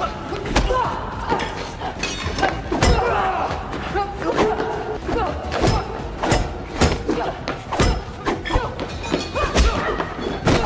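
Staged fight-scene sound: a quick string of punch and body-blow thuds, about a dozen, mixed with grunts and effort cries, over a music score.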